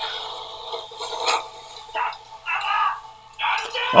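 Soundtrack of the show playing: voices speaking dialogue, with a few short knocks and clinks.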